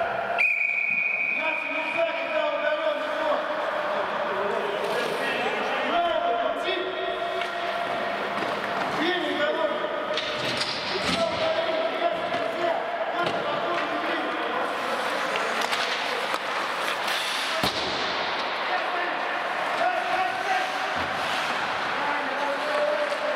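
Ice hockey game in an echoing indoor rink: players' indistinct voices and shouts, with scattered knocks of sticks and puck on the ice and boards. A brief high steady tone sounds just after the start.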